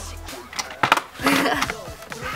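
Handling noise from objects being moved close to the microphone: two sharp knocks a little under a second in, then a short rustle, over quiet background music.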